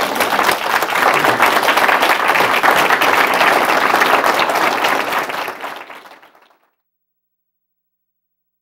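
Audience applauding with dense, even clapping, dying away about six seconds in.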